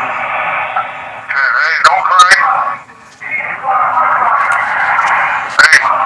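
Telephone audio from a jail call: indistinct voices and a steady background din heard through a narrow, phone-like line. A few sharp clicks come about two seconds in and again near the end.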